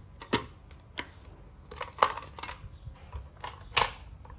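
Sharp clicks and knocks from handling a Zojirushi rice cooker's detachable inner lid as it is taken out of the cooker's lid. There are five or so separate clicks, the loudest about two seconds in and another just before the end.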